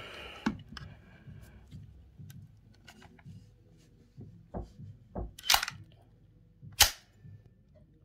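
Metallic clicks and clacks of an AK-47-style .22 rifle's action being worked by hand: about eight separate sharp clicks, the two loudest about five and a half and seven seconds in.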